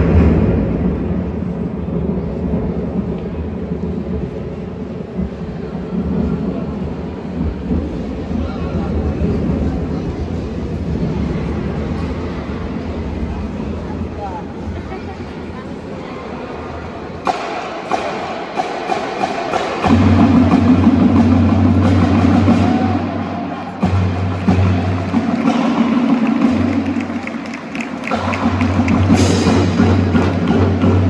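Show band's concert music in a large hall: sustained low chords for the first half, growing fuller, then louder sustained low chords from about two-thirds through, with a loud percussion hit near the end.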